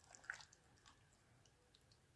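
Near silence, with a few faint soft clicks and a brief squishy sound in the first half second, then only faint scattered ticks.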